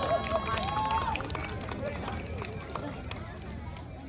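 Crowd of onlookers calling out and cheering, several voices overlapping, with scattered sharp clicks. The sound dies away steadily as it fades out.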